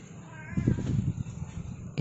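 A short wavering animal call about half a second in, over low rumbling noise.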